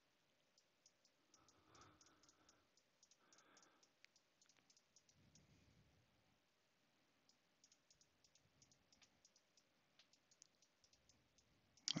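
Near silence, with faint, irregular clicks from a computer mouse and keyboard.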